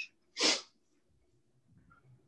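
A single short, sharp burst of breath from a person, about half a second in.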